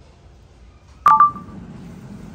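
About a second in, a sharp click and a short electronic beep. A low steady hum follows.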